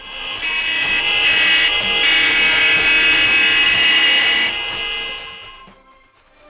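Several car horns sounding together in one long continuous blast from a passing wedding motorcade, swelling in over about a second and fading out near the end as the cars go by.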